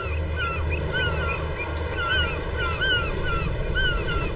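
A flock of gulls calling around a fishing trawler: short, harsh calls, about two a second, over a steady low rumble.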